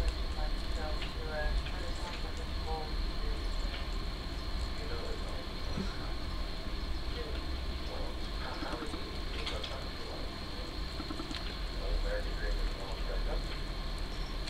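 Steady low room rumble and a faint steady high-pitched whine, with light clicks and rustles from hands handling ribbon and a hot glue gun, and faint murmured voice fragments.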